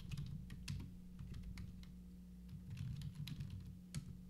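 Computer keyboard typing: irregular runs of key clicks with a short pause about halfway through, over a low steady hum.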